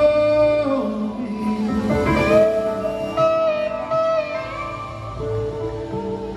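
Live rock band playing an instrumental passage: electric guitar holding long, bending lead notes over bass, drums and keyboards, recorded from within the arena crowd.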